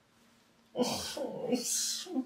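A man groaning and whining in exasperation, with loud breathy exhales, starting about three-quarters of a second in and running into a drawn-out "oh".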